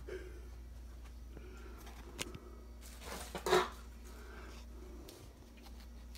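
Faint handling noises from working under a kitchen sink: a small click about two seconds in and a short scuffing rustle a little after the middle, over a low steady hum.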